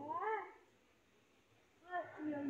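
A high-pitched voice with sliding, wavering pitch: one short utterance at the start and another beginning just before the end, with a quiet pause between.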